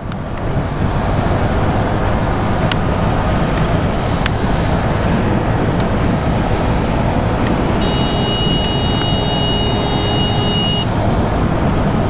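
Motorcycle engine running steadily at a cruising speed of about 90 km/h, mixed with a constant rush of wind and road noise. About eight seconds in, a steady high-pitched tone joins for roughly three seconds.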